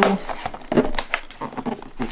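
Snap-in clips of a Lenovo ThinkPad P1 Gen 4 laptop's bottom cover clicking into place as the cover is pressed down, one sharp click about halfway through with a few lighter ticks around it: the cover seating.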